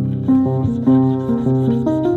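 Background piano-type music with notes changing every half second or so. Under it, a small file rasps back and forth, cutting the string nock into a laminated bow tip.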